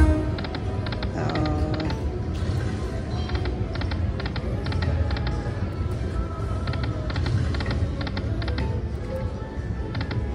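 Panda Magic video slot machine spinning its reels: electronic game music and short chiming notes with quick repeated ticks as the reels run and stop, over a steady low rumble.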